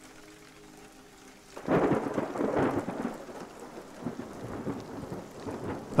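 Thunder over rain: after a quiet start, a clap breaks in a little under two seconds in and rolls on, slowly fading.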